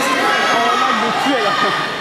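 Several spectators' voices overlapping in a sports hall, talking and calling out at once.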